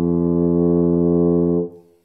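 Tuba playing one long, steady low note, ending shortly before the end: the lips' buzz amplified into the full tuba sound.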